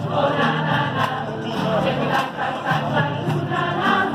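A women's choir singing a Christmas song together, many voices blended on a sustained melody.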